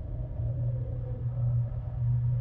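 A deep, low rumbling drone that swells and dips, with a faint wavering higher tone above it: sound design in a promo video's soundtrack.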